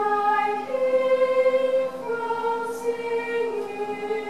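Treble choir of girls' voices singing long held chords, moving to new notes about a second in and again at about two seconds, with a brief sung 's' hiss near the end.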